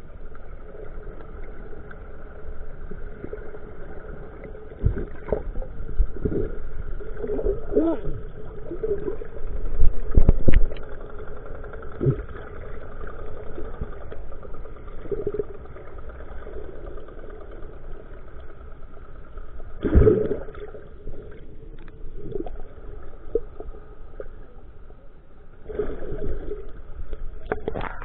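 Underwater sound: the steady hum of a fishing boat's engine carried through the water, with irregular knocks and thumps, the loudest about ten seconds in and again around twenty seconds.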